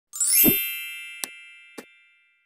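Intro logo sound effect: a quick rising shimmer into a low hit, leaving a bright ringing chime that slowly fades, with two short clicks in the second half.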